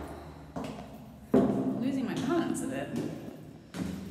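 A woman's voice, in short wordless exclamations and breaths, while she climbs stairs, with a sudden thump about a second and a half in.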